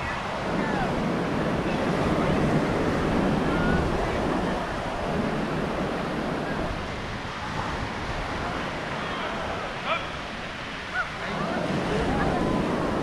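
Small waves breaking and washing up on a beach, the surf swelling and easing, with some wind on the microphone. Two brief sharp knocks come near the end.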